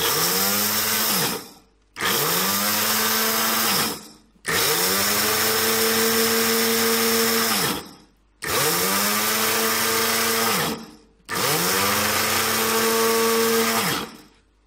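Small electric spice grinder run in five bursts, switched on and off with its button; each time the motor whines up to speed, runs steadily while grinding seed to a powder, then winds down.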